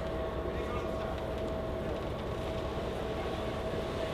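Steady low rumble and an even hum on the car deck of a docked ferry, with no sudden sounds.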